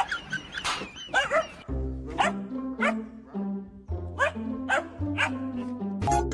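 A young German Shepherd-type puppy yips and whines in high, wavering cries. About two seconds in, bouncy music starts under it, and short yaps keep breaking through.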